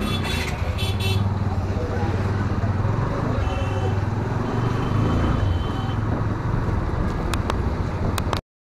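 Motorcycle engine running steadily at low speed, a continuous low hum, as the bike is ridden slowly through a busy street, with people's voices around it.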